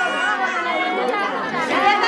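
Many women's voices chattering over one another in a seated group, with no drumming yet.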